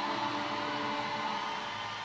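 Steady crowd noise from a packed ice arena, with a few faint held tones, easing off slightly towards the end.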